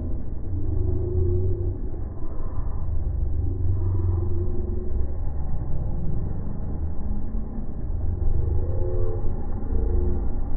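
Distant motocross dirt bike engines revving in short rising and falling bursts, over a heavy, uneven low rumble.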